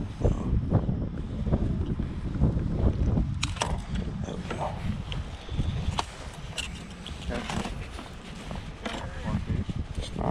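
Low wind rumble on the microphone, with scattered sharp clicks and rustles as a hook is worked out of a catfish's mouth over a landing net.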